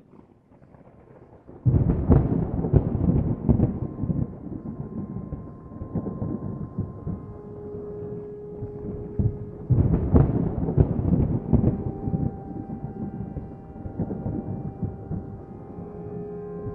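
Thunder: a loud clap about two seconds in that rolls on in a long rumble, then a second loud peal about ten seconds in. Steady held music tones fade in underneath from about the middle.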